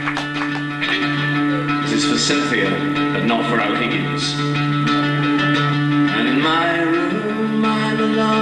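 Acoustic guitar played live in an instrumental passage of a song, with low notes held steady under the changing chords.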